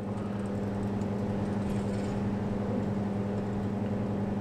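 Steady low electrical hum with a faint hiss from powered valve bench equipment: the valve amplifier under test and its valve oscilloscope.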